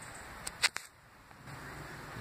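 Three quick sharp clicks a little past half a second in, the middle one loudest, over a faint steady background hiss.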